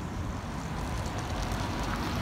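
Volgabus-6271.05 articulated city bus approaching, its engine and tyre noise growing slightly louder, with a faint steady whine coming in after about a second.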